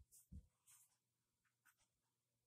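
Near silence, with a few faint, brief paper rustles as a small paperback book is handled and opened.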